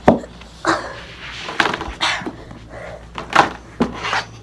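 Clear plastic storage tote knocking, scraping and flexing as a boy climbs into it and squeezes himself inside, with several separate sharp knocks.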